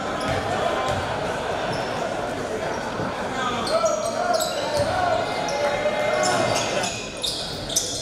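Live basketball game sounds in a gym: a crowd talking throughout, with a basketball bouncing on the hardwood and short sharp sounds off the court.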